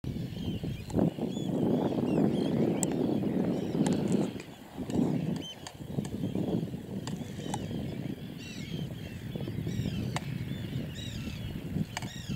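A large flock of waders, knot among them, calling in flight: a continuous scatter of short, arched chirps from many birds. Under it runs a gusting low rush, loudest in the first half.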